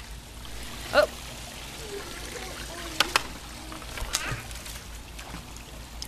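Water trickling steadily at a swimming pool's edge, with a few sharp knocks and small splashes about three and four seconds in as a dachshund grabs a floating squirt-gun toy out of the water.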